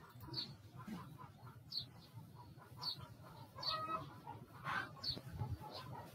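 Faint bird calls in the background: short, high calls that fall in pitch, coming about once a second, with a couple of fuller calls in the middle.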